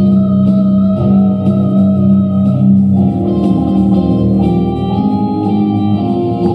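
Instrumental music with long held notes over a steady low drone.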